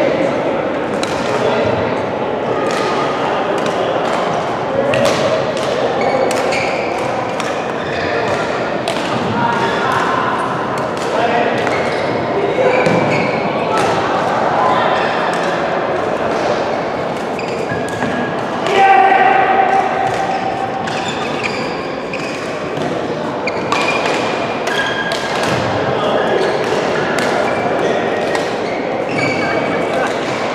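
Badminton rackets repeatedly striking shuttlecocks in rallies on several courts, short sharp hits coming every second or so, over indistinct voices, all echoing in a large sports hall.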